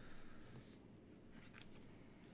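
Near silence: quiet room tone with a couple of faint clicks.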